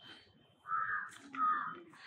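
A crow cawing twice, two harsh calls of about half a second each, the first about two-thirds of a second in and the second just after the middle.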